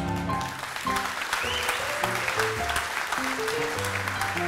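Audience applauding and clapping as the accompanist plays a short instrumental melody of single notes, stepping up and down, just after the sung final chord ends.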